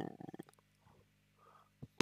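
Near silence in a pause of a man's speech: his voice trails off in the first half second, and a faint mouth click comes just before he speaks again.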